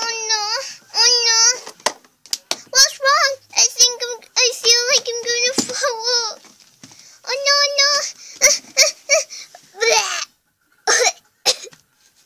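A girl's voice making wordless, wavering wails like a baby crying, several in a row, followed near the end by a few short, rough bursts like coughs.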